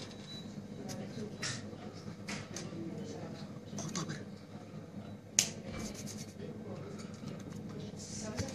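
A man talking, with one sharp click about five and a half seconds in.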